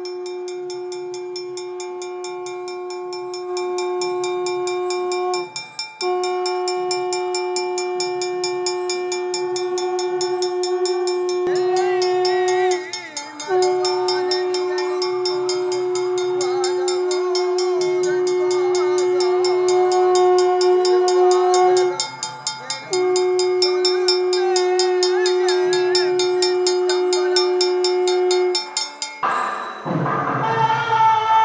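Conch shell (sangu) blown in four long, steady blasts, each held several seconds with brief breaks between. Behind them a hand-held metal gong is struck in a steady beat.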